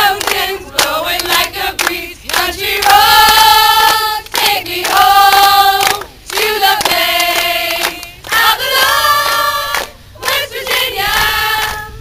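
A group of mostly young women singing together, with hand claps, in short held phrases broken by brief pauses.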